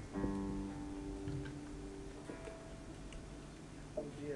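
Acoustic guitar chord struck once and left to ring, then a single higher note plucked about two seconds later, with a short knock at the very end.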